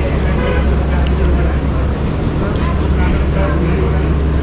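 Steady low drone of idling road vehicles, with people's voices chattering in the background.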